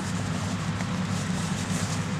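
Steady low drone of machinery from a nearby factory, a constant hum with an even hiss above it.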